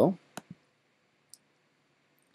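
A computer mouse click, a sharp double tick of press and release about half a second in, then one faint high tick near the middle; otherwise near silence.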